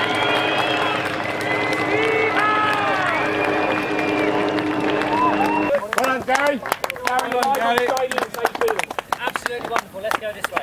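A crowd cheering and whooping over a steady hum. About six seconds in it cuts to close shouts and quick footsteps and knocks as people run across grass.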